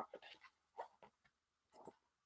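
Near silence: room tone with two faint, short sounds, one about a second in and one near the end.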